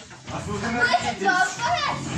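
Teenage boys' voices: lively, indistinct talk and exclaiming, starting about a quarter second in.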